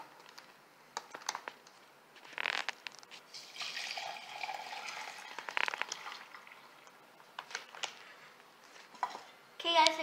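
Boiled milk tea poured from a saucepan through a metal mesh strainer into a glass: a trickling splash lasting about three seconds, from a few seconds in, with a few short knocks before and after it.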